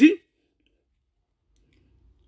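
A man's voice finishing a spoken word, then near silence with only a faint low hum.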